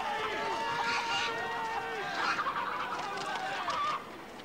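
Several men yelling in long drawn-out shouts, with farmyard birds squawking among them.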